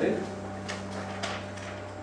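Steady low electrical mains hum, with two faint clicks, one under a second in and another about half a second later.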